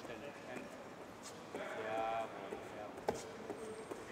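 Faint, distant voices in a large hall, with a single sharp knock about three seconds in.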